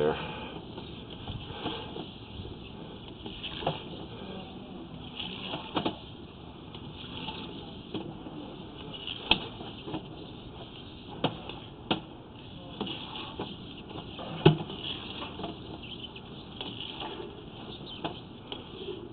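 Steady hiss with scattered sharp clicks and knocks, the loudest about three-quarters of the way through, as a sewer inspection camera's push cable is drawn back through the pipe.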